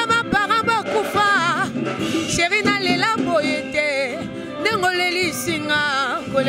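A woman singing a cappella-style phrases into a handheld microphone, holding long notes with a wavering vibrato and gliding between pitches.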